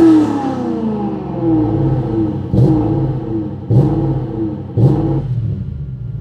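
Toyota 1UZ-FE V8 engine falling from about 4000 rpm back toward idle, then given three short throttle blips about a second apart. The engine has an ECU fault in its throttle position sensor circuit: the idle switch reads on all the time, which makes it die when the throttle is stomped.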